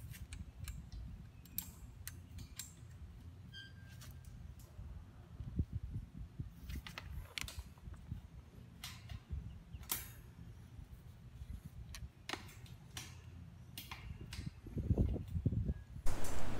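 Wire T-post clip being wrapped by hand around a steel T-post and welded-wire panel: faint, scattered metal clicks and scrapes over a low rumble.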